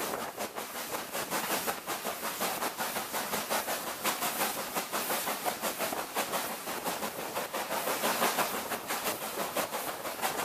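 Steam-hauled heritage train, drawn by LMS Black Five 45428, running along the line, heard from an open coach window. A steady rush of wheel and wind noise with a quick, uneven beat runs throughout.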